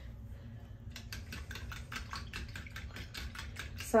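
Whisk beating eggs, milk and sugar in a ceramic bowl: a quick, even run of light clicks starting about a second in.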